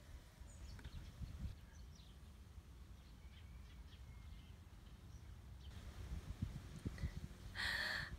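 Quiet outdoor garden ambience: a steady low rumble with a few faint, scattered bird chirps. A brief rustle comes near the end.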